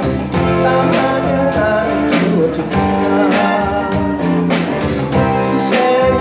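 A live band playing a song on electric guitars, drum kit and keyboard, with a drum and cymbal hit about once a second.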